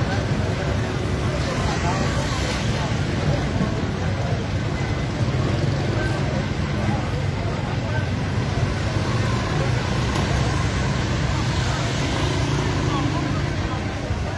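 Steady street noise of vehicles running, with people's voices mixed in.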